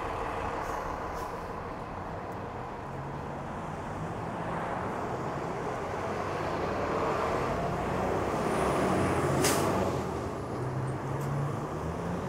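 City road traffic passing, with a heavy truck's engine drone growing louder to a peak about nine seconds in. At the peak comes a brief, sharp hiss, such as a truck's air brakes make.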